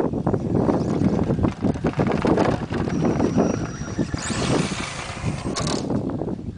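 HPI Blitz radio-controlled short-course truck with a Mamba 7700 brushless motor system running fast across a grass field, with a steady low rumble throughout. A brief thin whine comes about three seconds in, and a loud rushing hiss follows in the second half.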